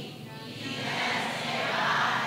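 Many voices reciting a Burmese Buddhist homage verse together in unison. A phrase fades into a short dip just after the start, and the next phrase swells up toward the end.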